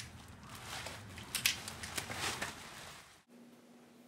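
Crinkling of a plastic protective suit and a few sharp clicks as a helmet is handled, falling to near silence about three seconds in.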